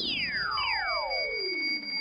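Broadcast time-signal effect marking the 40th minute of play: two synthesized tones glide steeply down from very high to low pitch, the second starting about half a second after the first, over two steady high beeping tones held throughout.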